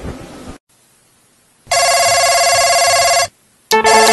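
A telephone ring: one steady ringing tone about a second and a half long, with a short silence on each side. Music starts near the end.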